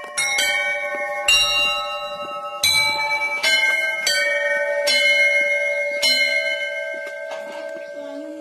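Hanging cast-metal temple bells struck one after another, about nine strikes roughly a second apart. The bells have different pitches, and their ringing overlaps and hangs on between strikes, fading over the last second.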